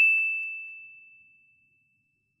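A single ding sound effect: one clear high bell-like tone, struck just before and ringing out as it fades away over about a second and a half.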